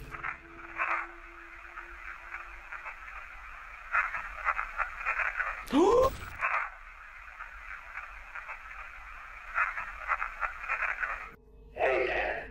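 Digital voice recorder playback of an EVP: steady static hiss with crackly, whispery bursts, presented as a voice whispering "yes… I remember Tanner" after a pause. A loud rising swoosh comes about six seconds in.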